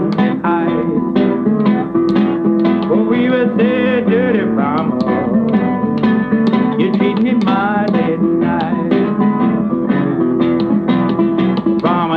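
Acoustic blues song: steady plucked acoustic guitar accompaniment, with a man's singing voice sliding between notes over it.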